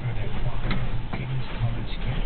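Steady low rumble inside a sailboat's cabin while under sail, with a few light clicks and knocks.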